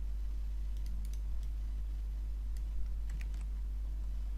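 A handful of scattered computer mouse and keyboard clicks, with a quick cluster about three seconds in, over a steady low hum.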